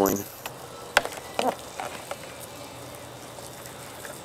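Wood fire in a mesh fire pit crackling, with one sharp pop about a second in and a few fainter pops around it.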